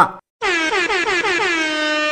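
A horn blast sound effect that starts about half a second in, its pitch wavering rapidly at first and then settling into one steady held note.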